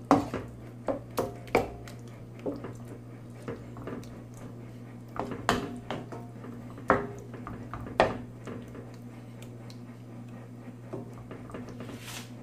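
Wooden spatula stirring thick cream sauce in a non-stick pan, with irregular scrapes and knocks against the pan. A steady low hum runs underneath.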